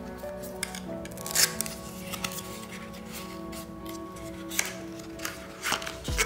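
Background music with a few short scrapes and clicks of a small cardboard box being opened by hand, its flaps pulled open and the contents drawn out. The loudest scrape comes about one and a half seconds in.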